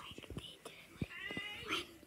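Faint taps and rustles of plush toys being moved about by hand, with a brief, faint high-pitched squeaky call a little past halfway.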